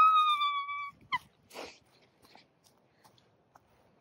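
A woman's high-pitched squeal of alarm, held for just under a second, then a short second squeak and a quick breath. She is startled by a large bee flying around her.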